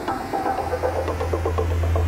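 Electronic intro sting: a steady deep drone under a quick patter of short bright tones, slowly growing louder.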